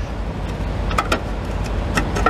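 Steady low rumble, with two light clicks about a second in as rubber fan belts are worked around a truck engine's cooling fan blades.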